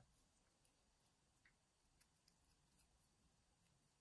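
Near silence, with a few faint ticks of a small hex key turning a grub screw into a brass lock cylinder.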